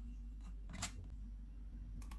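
Metal ice cream scoop scraping through frozen ice cream in a plastic tub: one short scrape a little under a second in, over a low steady hum.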